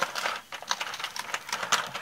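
Small scissors snipping through patterned paper in a run of short, irregular cuts while fussy-cutting around a lace border.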